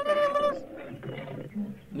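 A long, loud, steady-pitched cry with a rich, even set of overtones that cuts off about half a second in, followed by quieter talk.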